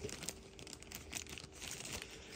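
Faint rustling and small handling noises as a part is picked up, with scattered light ticks.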